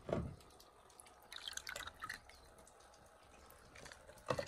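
A hand moving in a shallow plastic tub of water: a short slosh at the start, then a few small splashes and drips about a second and a half in.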